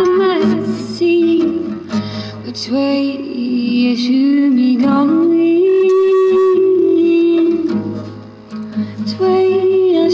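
Acoustic guitar strummed, with a voice singing long held, sliding notes over it.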